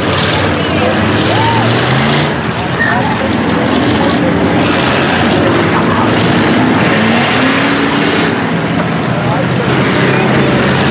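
A field of dirt-track cruiser-class race cars running laps together, their engines loud and continuous, with pitch rising and falling as the cars accelerate and pass.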